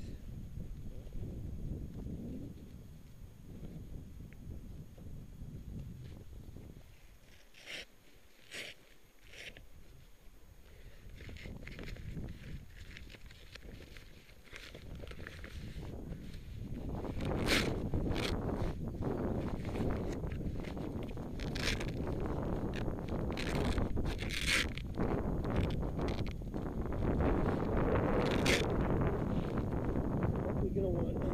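Footsteps in crampons crunching into firm snow, with sharp clicks now and then, over a low rumble of wind on the microphone. The steps get louder and closer together in the second half.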